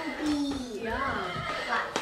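A horse-like whinny, dropping and wavering in pitch for about a second and a half.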